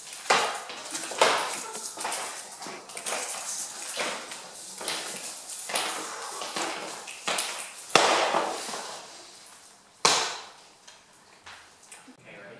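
A series of sharp percussive hits made by performers, about one a second at first and then more spread out, two of the later hits ringing on for a second or so in the room.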